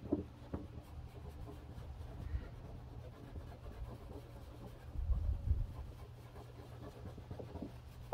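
A cloth rubbing on a car's painted fender, a faint scrubbing as softened badge adhesive and adhesive remover are wiped off. A brief low rumble comes about five seconds in.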